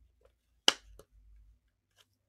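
One sharp click about two-thirds of a second in, then a softer click a moment later, with a faint low rumble: a trading card and its hard plastic holder being handled and set down on the desk.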